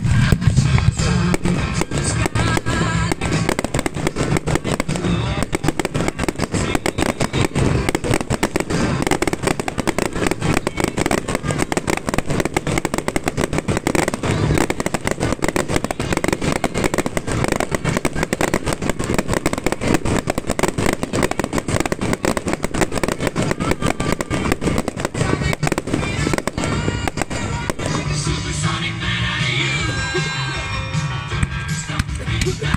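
A fireworks display set to music: a dense, unbroken run of rapid bangs and crackles over a music soundtrack, easing slightly near the end.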